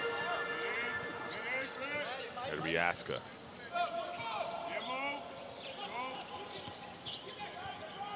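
Court sound of a live basketball game: the ball bouncing on the hardwood floor with sneakers squeaking as players move, and scattered shouts from players and bench. The loudest single knock comes about three seconds in.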